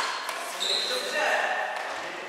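Sounds of a badminton doubles rally on a wooden hall floor: short squeaks of shoes on the parquet, players' voices, and the hall's echo.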